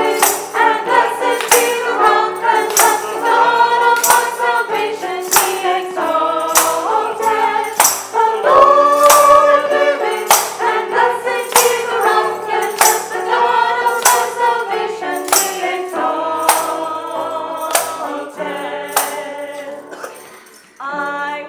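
Small mixed choir singing a hymn together, with sharp jingling percussion strokes on the beat about every two-thirds of a second.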